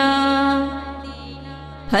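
A woman's singing voice holds the last note of a naat line, then fades about half a second in, leaving a low steady drone underneath; the next sung phrase begins right at the end.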